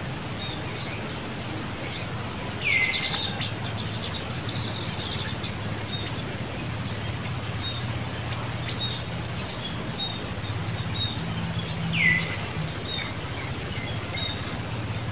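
Birds calling: repeated short high chirps, and two louder downward-sweeping calls, one about three seconds in and one near the end, over a steady low background hum.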